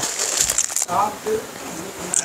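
Plastic wrapping of cloth bundles rustling and crinkling as they are handled, loudest in the first second, with a brief murmur of voice about a second in.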